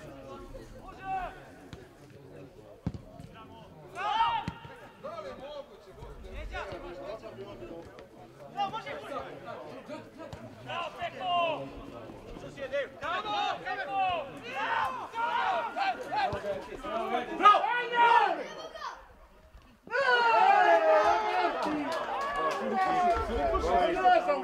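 Voices calling and talking around an outdoor football pitch, unclear as words. After a brief drop-out a few seconds before the end, the voices come back louder and denser.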